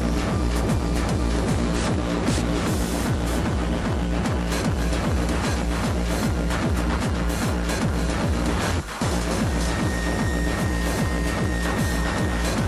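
Hardcore techno DJ set: a fast, steady kick drum under dense electronic layers. The beat drops out for a split second about three-quarters through, and a high held tone comes in near the end.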